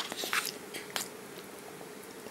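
Metal fork stirring a thick microwaved stew and mashed potato in a plastic tray. There are a few sharp clicks and scrapes of the fork against the tray and through the food in the first second, then it goes quieter.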